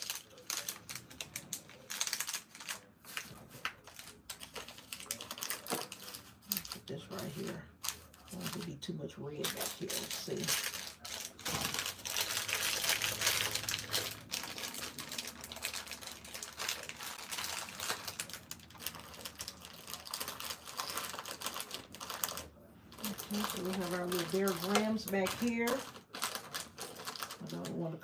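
Crinkling plastic snack wrappers and rustling packaging with a dense run of quick clicks and taps, as snack packs and candy bags are handled and tucked into a plastic tub gift basket.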